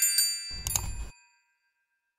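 Notification-bell sound effect from a subscribe-button animation: a bright ding ringing out, with a couple of sharp clicks at the start. About half a second in comes a short, soft thud with clicks, and all of it fades out by about a second and a half.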